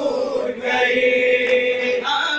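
Noha, a Shia mourning lament, chanted by male voices through a microphone. The voices draw out one long held note from about half a second in.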